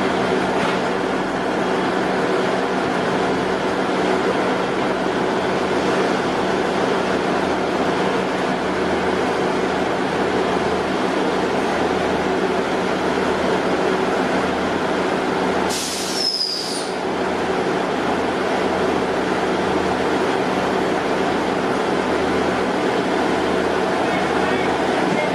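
Class 158 Sprinter diesel multiple units running with their engines on at the platform, a steady diesel hum. About sixteen seconds in there is a brief high hiss with a short falling squeak.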